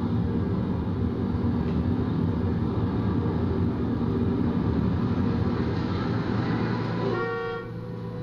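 City street traffic noise with car horns, heard from a film soundtrack played over room speakers. A single horn blast of about half a second stands out near the end.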